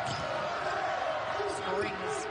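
A basketball being dribbled on a hardwood arena court, over steady crowd noise in a large hall.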